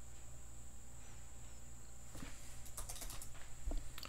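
Faint computer keyboard keystrokes, a few scattered clicks in the second half, as a stock ticker symbol is typed in.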